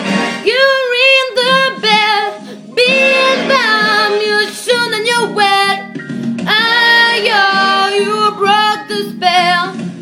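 A young female voice singing loudly over a backing track, belting a string of held notes with wide vibrato and slides in pitch between them.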